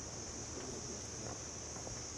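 Steady high-pitched chirring of an insect chorus, unbroken throughout.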